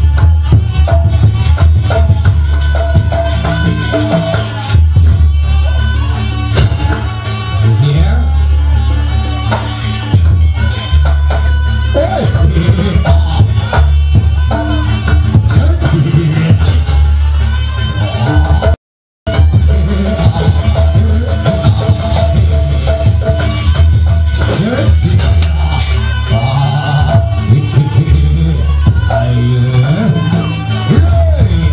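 Loud live Jaranan Buto dance music from a Javanese gamelan-style ensemble, heavy drum beats and ringing pitched percussion, with a voice over it at times. The sound cuts out completely for a moment a little past halfway.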